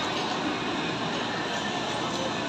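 Steady background noise of an indoor shopping mall, an even hiss and hum with no distinct events.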